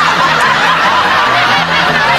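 Audience laughter, many people laughing at once, over music with a repeating low bass line.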